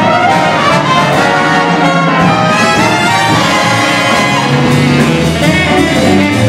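Student jazz big band playing, the trumpet and trombone sections sounding together in sustained chords over the saxophones and rhythm section.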